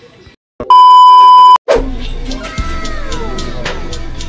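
A loud, steady electronic bleep lasting about a second, edited in after a brief dropout. Background music with a regular beat comes in just after it.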